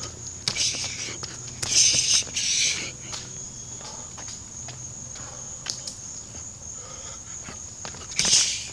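Insects chirring in a steady high drone, with a few loud, sharp hissing bursts in the first three seconds: a boxer's quick exhalations as he throws punches while shadow boxing. Faint scattered clicks and scuffs run through it.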